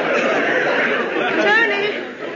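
Studio audience laughing at a punchline, the laughter dying away near the end.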